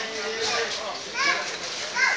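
Indistinct voices talking over street background noise, among them higher-pitched voices like children's, loudest about a second in.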